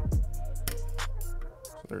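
Background music with a steady bass line and sharp percussion hits; the bass drops away about three-quarters of the way through.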